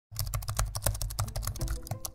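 A keyboard-typing sound effect: a rapid, even run of key clicks, about a dozen a second, over a low rumble, with a few steady musical tones starting near the end.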